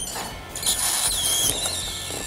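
Small plastic toy parts, a gas-pump hose and a toy car, handled and rubbed together in a brief rustle, with a faint high wavering tone in the second half.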